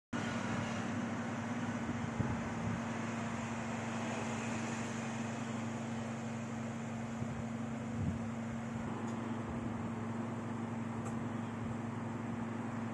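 Steady low mechanical hum with an even hiss underneath, unchanging throughout, with a faint knock about two seconds in and another about eight seconds in.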